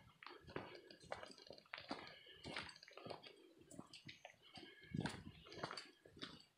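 Faint footsteps on a dirt trail strewn with dry leaves, about two steps a second, each step a short crackle of leaf litter, a few of them louder.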